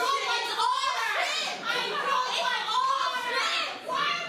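A woman's high-pitched voice, talking or exclaiming continuously without clear words.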